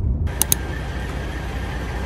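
Steady low rumble of vehicle engines on a gas station forecourt, with two sharp clicks about half a second in.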